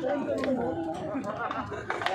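Chatter: people talking in the background, their voices overlapping.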